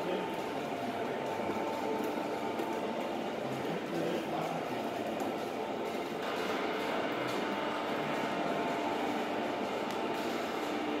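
Electric-powered stone oil chekku (ghani) running: the wooden pestle turning and grinding oilseeds in the stone mortar, making a steady mechanical running and grinding noise with a continuous hum from the drive.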